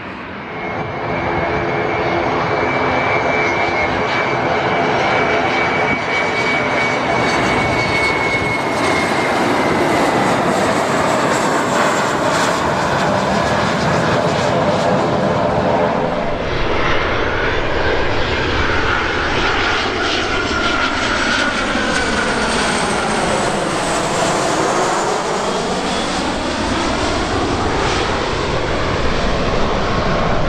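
Jet engines of Boeing 737 Classic airliners, CFM56-3 turbofans. First a 737-300 runs on the runway with a loud, steady rumble and a high whine; about halfway through, a 737-400 freighter passes low overhead on approach, its engine noise sweeping down in pitch and back up as it goes by.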